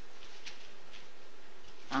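Steady background hiss with a faint hum, unchanged throughout.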